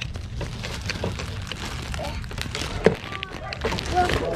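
Faint voices with scattered clicks and knocks, one sharper knock near the end, over a low rumble of handheld handling noise.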